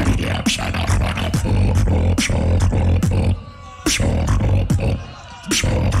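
Beatboxer performing a battle routine into a handheld microphone: deep bass with sharp snare-like clicks in a steady beat. The beat drops out briefly twice, about three and a half and about five seconds in.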